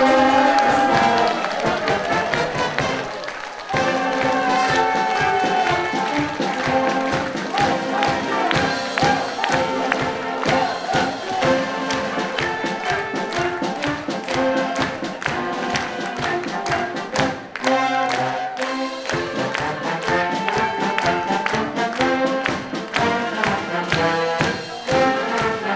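Wind band playing a lively brass-led piece, with the audience clapping along in time.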